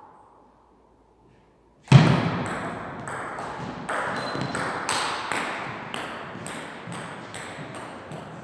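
A table tennis rally: the celluloid-type ball clicking off paddles and the table, about three sharp hits a second in a reverberant hall, after a loud thud about two seconds in.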